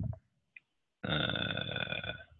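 A man's long, drawn-out hesitation 'uh', starting about a second in after a short silence and held steady.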